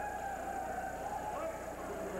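Voices in an arena, with one long held shouted call lasting about a second and a half, over the hiss of the recording.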